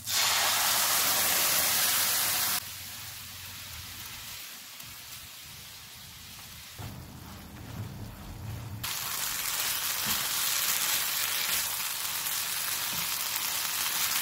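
Milk sizzling in a hot non-stick pan of fried chicken and vegetables, loud for the first couple of seconds and then dropping off suddenly to a quieter sizzle. About nine seconds in the sizzle grows louder again as a spatula stirs the mixture while it cooks down until thick.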